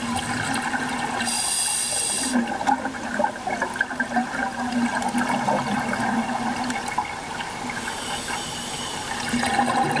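Scuba diving regulator breathing underwater: a hiss of inhalation about a second in and again near the end, with a long gurgle of exhaled bubbles between.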